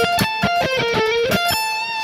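Electric guitar picking a fast run of single notes, about seven a second, ending on one held note.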